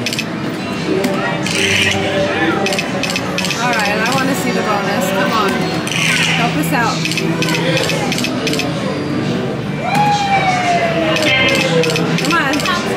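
Video slot machine sounds as the reels spin: runs of quick electronic clicks and bright game jingles, over the chatter of a casino crowd. Near the end a single tone glides steadily downward.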